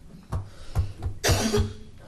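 A person coughing once, a loud harsh burst about a second and a quarter in, after a couple of short sharp taps or small throat sounds.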